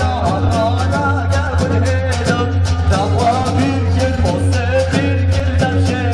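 Kurdish wedding dance music: an ornamented, wavering melody line over a steady low drone, driven by a fast, even drum beat.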